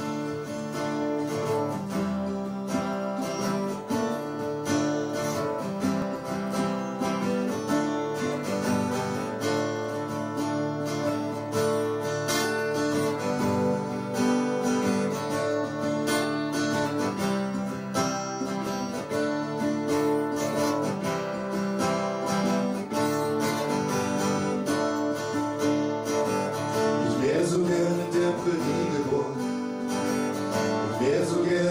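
Two acoustic guitars strummed together as an instrumental intro. A male singing voice comes in near the end.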